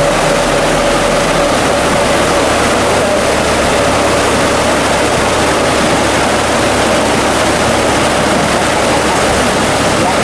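Water rushing into a canal lock chamber through the upstream gate's open sluices as the lock fills, a loud, steady rush. A low hum underneath stops about one and a half seconds in.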